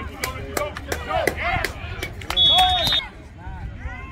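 Spectators shouting and yelling throughout. About two and a half seconds in, a referee's whistle gives one short, steady, high blast, the loudest sound, blowing the play dead.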